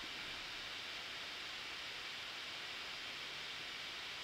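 Laptop cooling fan of a 2018 Intel MacBook Pro running at high speed under a full video-export load, a steady, faint whooshing hiss.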